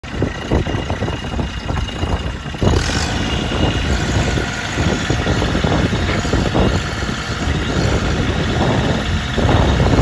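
Compact tractor engine running steadily at idle while its front plow blade is angled from side to side.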